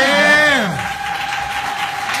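Audience cheering and clapping at the end of a spoken-word poem, with a long vocal whoop that rises and then falls away during the first second.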